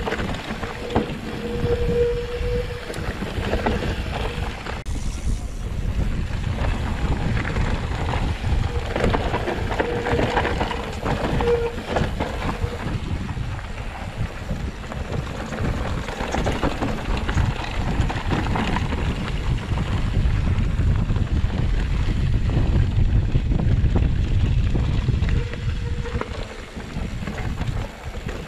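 Mountain bike riding down a dirt trail: wind buffeting the microphone over the rumble and rattle of tyres and bike on rough ground, louder near the end. A faint steady tone comes and goes twice.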